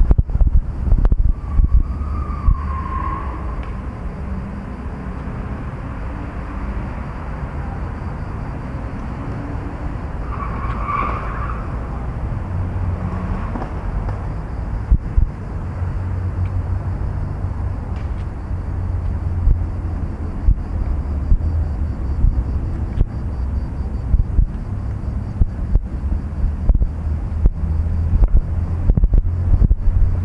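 Steady low rumble of wind buffeting the microphone mixed with nearby street traffic, with two brief higher-pitched sounds about two seconds and eleven seconds in.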